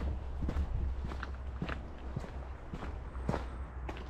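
Footsteps crunching on a gravel path, a steady walking pace of about two steps a second.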